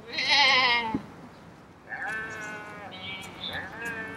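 People imitating sheep: a loud, wavering bleat in the first second, then after a short gap longer, steadier bleats from more than one voice overlapping.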